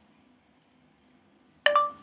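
Near silence, then about one and a half seconds in a short electronic chime from a smartphone that rings briefly and fades: Google Assistant's tone that it is listening for a spoken command.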